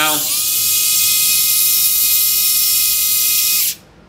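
Neurosurgical drill with a round burr bit, switched on and running free in the air: a short rise in pitch as it spins up, then a loud, steady high whine that cuts off suddenly near the end.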